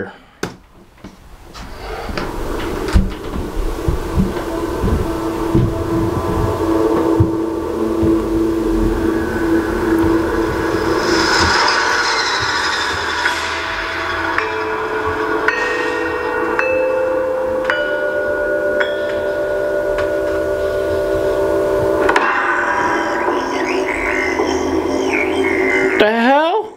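Film trailer soundtrack: after a quiet opening, low knocks and a held low tone build into music whose held notes step upward. The music breaks off suddenly about 22 seconds in, and a different passage takes over.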